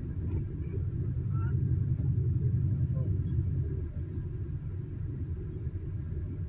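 Low rumble of a sightseeing bus heard from inside its cabin, engine and road noise while driving, swelling a little about a second in and easing back after about four seconds.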